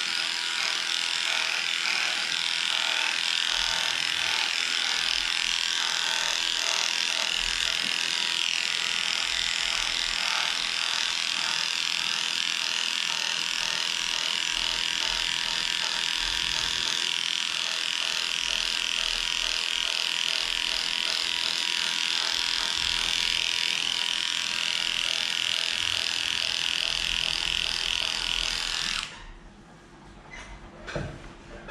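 Electric dog grooming clipper running steadily as it shaves a matted cocker spaniel's coat, stopping abruptly near the end.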